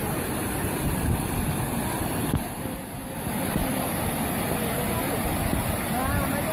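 Floodwater from a flash flood rushing down a wadi: a dense, steady noise heaviest in the low range. Bystanders' voices are faintly heard, mostly in the second half.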